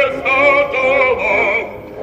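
Operatic solo voice singing held high notes with a wide vibrato over orchestral accompaniment; the phrase breaks off shortly before the end.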